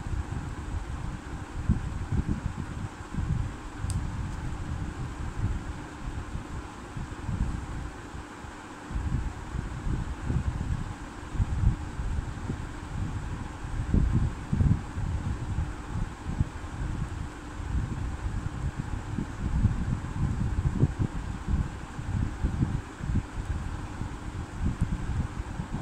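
Steady room-fan-like air noise with a faint hum, and an uneven low rumble of moving air on the microphone. A single faint click comes about four seconds in.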